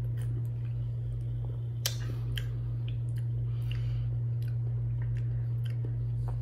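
A person drinking soda from a plastic bottle, with small wet swallowing clicks and one sharper click about two seconds in, over a steady low hum.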